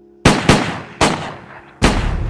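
Four gunshots: two in quick succession, then a third about half a second later and a fourth close to a second after that, each with an echoing tail. They are a sound effect standing for the son's killing.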